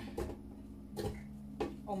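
Chunks of watermelon dropped by hand into an empty plastic blender jar, landing with two soft thuds about a second apart over a low steady hum.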